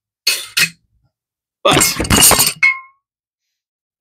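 Screw cap of a glass bottle of Johnnie Walker Red Label blended scotch being twisted open, with a short scrape of the cap. About two and a half seconds in there is a glassy clink that rings briefly.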